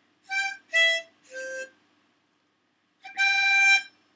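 Harmonica played by a first-day beginner: three short notes in quick succession, a pause, then a longer, louder held note near the end, the start of a song's tune.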